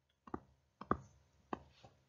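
A few faint, short taps of a stylus on a tablet screen as words are handwritten and circled, spaced roughly half a second apart.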